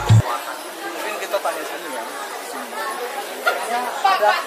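Several people talking at once in a room: background chatter, no one voice standing out. A music track cuts off abruptly at the very start.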